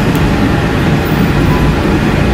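Walt Disney World monorail running, a steady low rumble with an even hiss over it.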